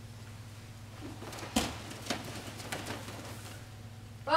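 Bare feet thudding on foam mats and taekwondo uniforms snapping as a group of students performs a form: one sharp thud a little before halfway, a smaller one soon after, then a few faint ones, over a steady low hum.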